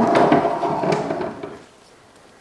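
Wooden secret door, built to look like a cabinet, being pulled open: wood scraping with a few sharp knocks, dying away about a second and a half in.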